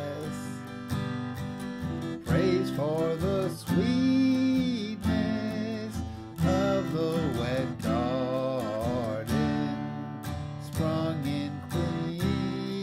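Acoustic guitar strummed as a steady chordal accompaniment, with a man's voice carrying a melody over it in several wavering phrases.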